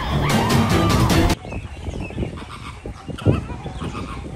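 Background music that cuts off abruptly about a second in, giving way to a flock of flamingos honking, with one sharp knock near the end.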